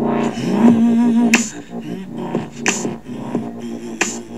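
Electric guitar playing a lead line, bending a string up to a held note about half a second in, over a recorded rock backing track with two sharp drum hits.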